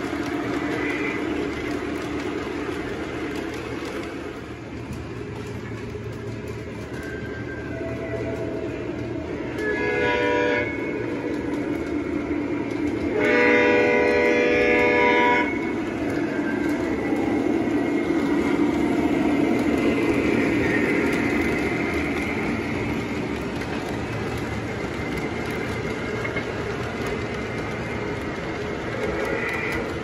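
Model diesel freight train running on its track with a steady rumble of wheels and motor. Its horn sounds twice, a short blast about ten seconds in and a longer one about three seconds later.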